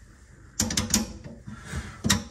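Metal mounting hardware under a sink basket strainer clinking and rattling as it is handled, a quick run of sharp clicks starting about half a second in.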